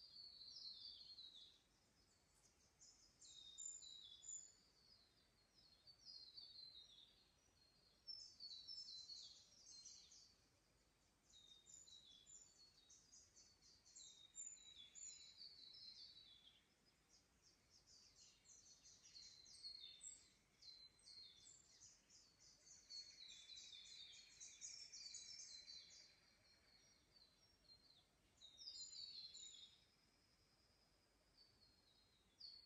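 Forest birds singing in the dawn chorus: fairly faint, high, quick chirping phrases, each lasting a second or two, coming one after another with short gaps and sometimes overlapping.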